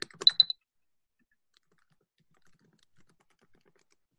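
A quick run of computer keyboard keystroke clicks in the first half second, then a few faint scattered clicks.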